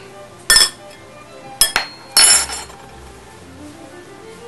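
A spoon clinking sharply against a dish three times, about a second apart, the last clink longer and ringing.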